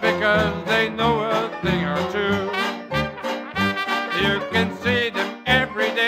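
Traditional Dixieland jazz band playing together: trumpet, trombone and clarinet weaving melodies with vibrato over banjo, tuba and drums keeping a steady beat about twice a second.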